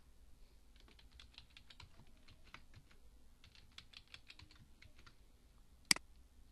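Typing on a computer keyboard: two runs of quick keystrokes with a short pause between them, as a password is entered twice. One much louder click near the end, a mouse click.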